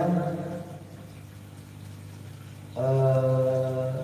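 Speech only: a man's amplified voice drags out a word at the start, goes quiet for about two seconds, then holds one long vowel at a level pitch near the end.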